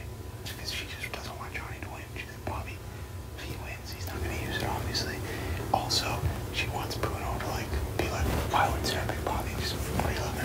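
Two men holding a hushed, whispered conversation, growing a little louder after about four seconds, over a steady low hum.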